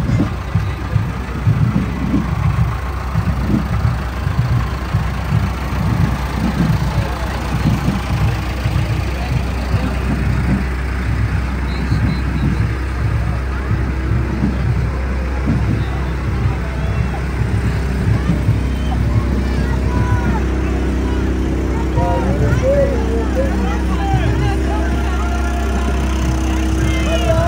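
Case CX80 tractor's diesel engine running steadily at low speed close by as it tows a carnival float, with a crowd's voices over it. Calls and shouts become more prominent in the last few seconds.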